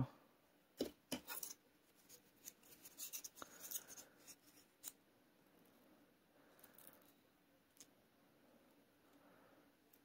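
Faint scratching and light clicks of a thin wooden stick poking seeds down into loose potting soil in a pot: a few small clicks about a second in, then a few seconds of soft scraping, then near silence.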